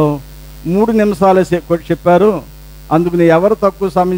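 A man's voice speaking in two phrases, with a steady low electrical hum underneath that is heard on its own in the short pauses near the start and about two and a half seconds in.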